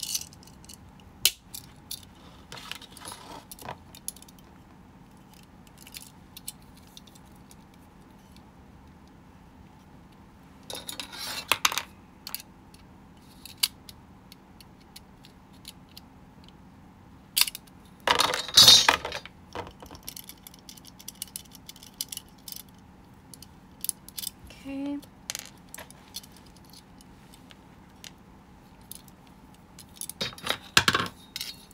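Metal binder ring mechanism being handled and taken apart: scattered metallic clicks and clinks of the rings. There are two denser, jangling clusters, one a little before halfway and the loudest a few seconds later.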